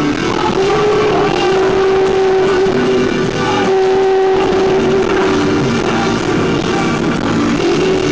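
Live rock band music: a male voice singing with long held notes over strummed acoustic guitar and the band.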